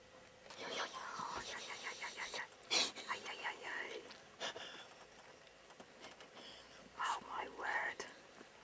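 People whispering in hushed voices, a few short phrases with pauses between them.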